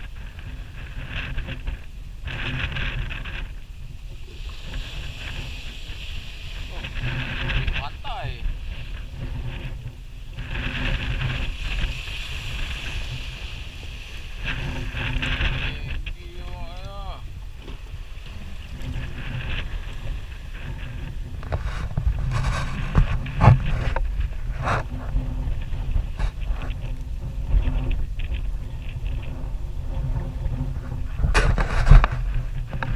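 Strong wind buffeting the microphone on a small aluminium boat rocking in a rough sea, with surges of splashing water and sharp knocks of waves against the hull, more frequent in the second half.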